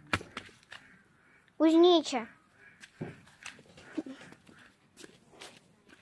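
Footsteps knocking on a wooden plank walkway, a few scattered knocks, with a short wordless voice sound about two seconds in.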